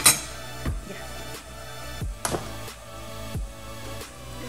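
Background electronic music with steady held tones and a deep, falling bass hit about every second and a half. A sharp knock sounds right at the start.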